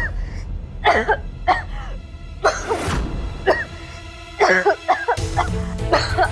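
A woman coughing in repeated short fits, as if choking, over steady dramatic background music.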